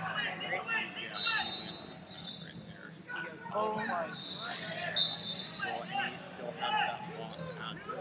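Indistinct voices of several people talking around a large hall, with a steady low hum underneath and a thin high tone sounding briefly twice.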